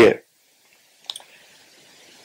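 A man's voice breaks off just after the start. About a second in comes a single brief click, followed by faint steady hiss.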